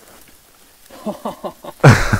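A man laughing: a quick run of short falling "ha" sounds starting about a second in, building to a loud burst near the end.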